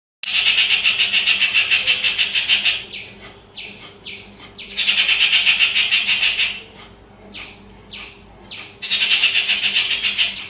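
Birds calling: three bursts, each about two seconds long, of fast, high, rattling chatter, with short downward-slurred notes in the gaps between.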